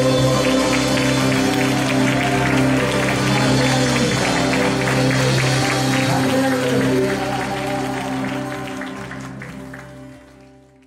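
Live worship band holding its final chord under acoustic guitar, fading out from about seven seconds in, with applause over the held chord.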